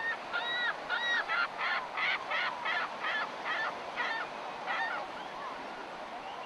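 A bird calling a long run of short notes, each rising and falling in pitch, about three a second, fading out about five seconds in.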